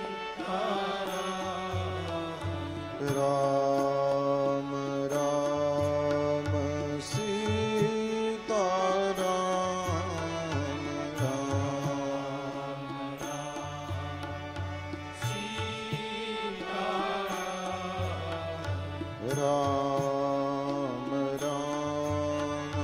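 Devotional Hindu singing with musical accompaniment: a gliding, melodic voice over held steady notes and a regular low drum beat.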